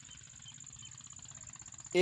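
Quiet field ambience between sentences: a faint, steady, high-pitched whine over a soft background hiss, with a rapid faint pulsing.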